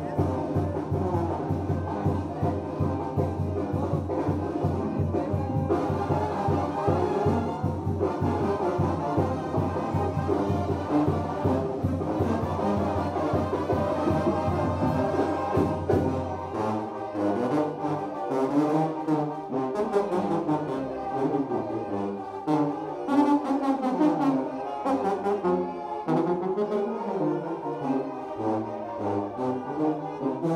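Brass band playing lively dance music with a steady low beat. About sixteen seconds in, the bass beat drops out and a winding low melody carries on.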